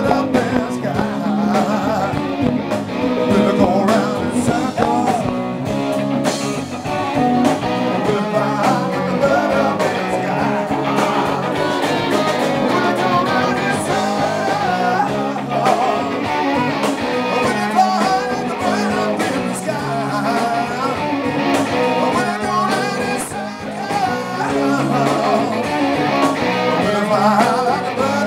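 Live rock band playing a blues-rock song: electric guitars over electric bass and a drum kit, at a steady loud level.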